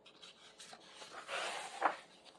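A page of a hardcover picture book being turned: the paper slides and rustles, growing louder about a second in and peaking just before the end.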